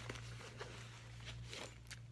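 Faint handling noise: a few light clicks and rustles over a steady low hum.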